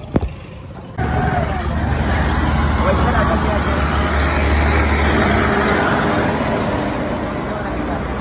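A short click, then about a second in a steady, loud ride noise cuts in: a motorcycle running along a road, its engine hum mixed with low wind rumble on the microphone.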